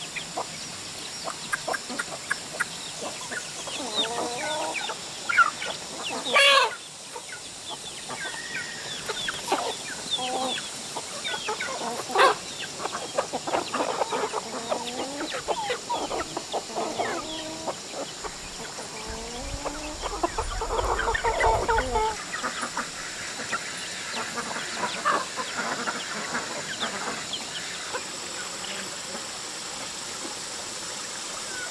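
A flock of domestic chickens, hens and roosters, clucking in short, scattered calls as they feed.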